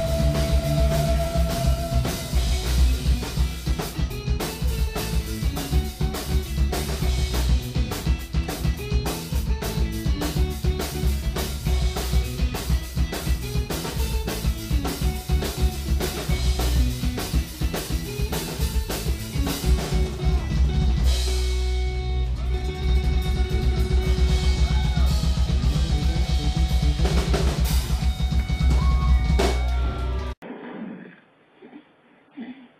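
A live heavy rock band playing: electric guitars over fast, dense drum kit beats with a pounding bass drum and snare. The drum hits thin out briefly about two-thirds of the way through, then the full beat comes back.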